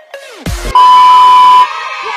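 Edited-in sound effects: falling pitch glides ending in a short low boom about half a second in, then a loud steady electronic beep lasting nearly a second that cuts off suddenly as voices and crowd noise begin.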